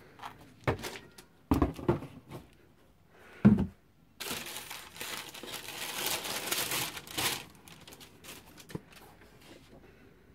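Cardboard shoe box and packaging handled, with a few knocks and thumps in the first four seconds, the loudest about three and a half seconds in. Then tissue paper crinkles for about three seconds, with small clicks trailing off.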